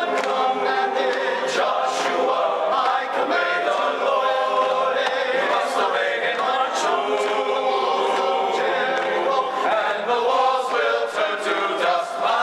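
Men's chorus singing unaccompanied in several-part harmony, sustained notes moving together without a break.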